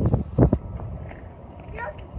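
Wind rumbling on the microphone, with a brief voice fragment about half a second in and a faint voice near the end.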